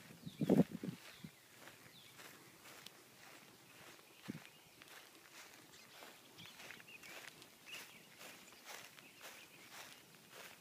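Footsteps of a person walking across grass at a steady pace, faint, with a louder thump about half a second in.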